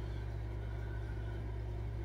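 A steady low hum of room background noise, unchanging and with no other sound on top.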